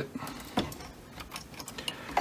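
Faint handling clicks and light plastic rattling as a zip tie is fed around a Cricut Maker's drive motor and through the hole in its bracket. There is one sharper click about half a second in and a few small ticks near the end.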